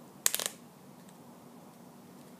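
A brief burst of rustling and clicks from hands handling cloth close to the microphone, about a quarter second long, then quiet room tone.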